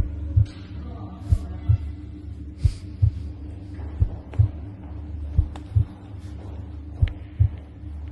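Slow heartbeat-like double thumps: six pairs about a second and a third apart, over a steady low hum.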